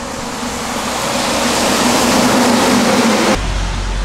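Heavy rain pouring down, mixed with the hiss of traffic on the wet road, growing steadily louder and then cutting off suddenly near the end.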